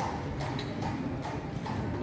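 Horse's hooves clip-clopping at a walk on a paved street, an even beat of about two clops a second over low street rumble.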